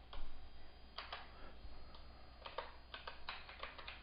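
Keys being pressed one after another to work out a calculation: light, sharp clicks in small irregular clusters, the densest run near the end.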